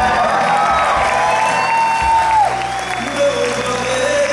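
Live band playing with electric guitar, a long high note held for about two seconds before dropping away, over audience applause and cheering.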